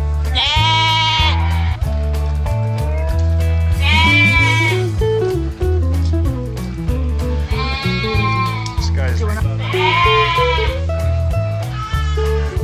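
Lamb bleating four times over background music. Each call lasts about a second, with a high, wavering pitch that falls off at the end.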